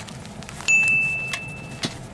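A single high-pitched chime, a pure bell-like ding that strikes sharply just under a second in and fades for about a second before stopping.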